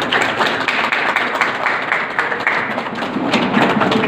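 A group of people clapping, a dense, irregular patter of hand claps.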